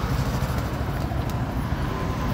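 Street traffic: a steady low rumble of road vehicles, with a few faint clicks.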